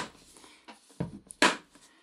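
A few short clicks and knocks as hands handle a hard plastic carrying case on a wooden table, the sharpest knock about one and a half seconds in.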